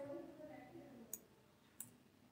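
Two short, sharp computer mouse clicks a little under a second apart, in a very quiet room, with a faint murmur of voice in the first second.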